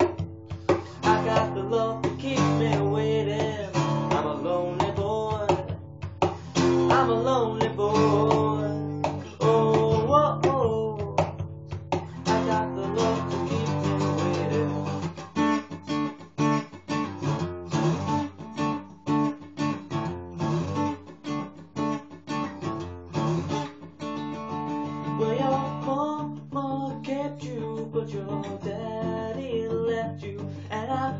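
LAG Tramontane 222 acoustic guitar strummed and picked in a blues-rock riff, with a man's voice singing over it in the first part. Through the middle the guitar plays alone in quick, clipped strums. The recording is made on a phone's microphone, so it is thin at the top.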